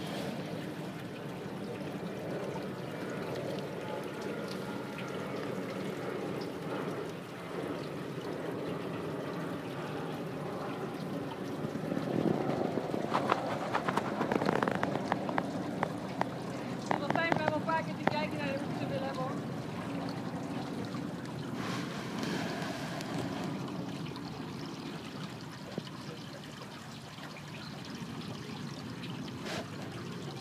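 Water sloshing and splashing as a person swims through a pond, with louder splashes about halfway through.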